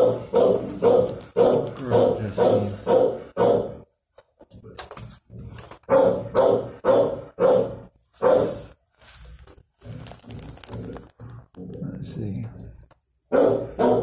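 Dog barking repeatedly in quick runs of short barks, with a brief pause about four seconds in and softer barking for a few seconds before it grows loud again near the end.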